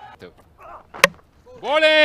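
A single sharp knock of a cricket ball's impact about a second in, on the delivery that takes a wicket.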